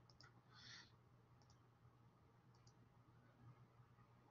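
Near silence with a few faint computer mouse clicks, including a quick double click, and one short soft hiss near the start.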